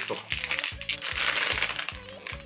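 Plastic candy wrapper of a giant lollipop crinkling as it is torn open by hand. Background music with a steady beat of about three a second plays underneath.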